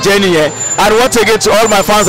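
A man talking loudly into a handheld microphone, close to it.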